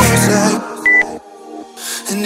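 Electronic background music fades out, and about a second in a single short, high workout-timer beep sounds, marking the start of the next exercise interval. The music comes back near the end.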